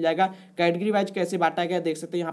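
Speech only: one voice narrating, with a brief pause about half a second in.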